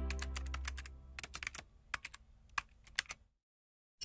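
Keyboard typing sound effect of a logo sting: a quick, irregular run of clicks as a tagline types out letter by letter, over the fading tail of a low musical tone. Everything stops about three seconds in.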